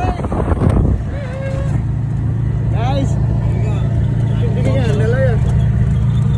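Steady low drone of a small open-sided passenger vehicle driving along, its engine and road noise running evenly. Loud shouting and laughter fill the first second, and voices call out over the drone now and then.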